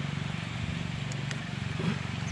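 A small boat engine running steadily at low revs, an even low drone. A few faint clicks, and a short knock near the end.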